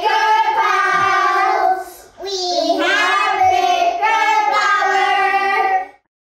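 Children singing together in two long phrases of held notes, with a short break about two seconds in; the singing cuts off abruptly just before the end.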